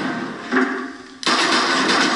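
A single loud pistol shot about a second in, sudden and ringing on in a hard, tiled room, from a film soundtrack played through a television speaker; a fading, droning sound runs before it.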